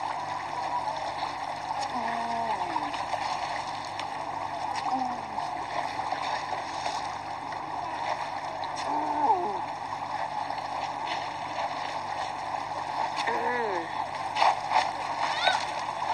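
A shoal of fish splashing and churning at the river surface as they take thrown fish food, over a steady wash of ambient noise; the splashes grow sharper and more frequent near the end, with voices in the background.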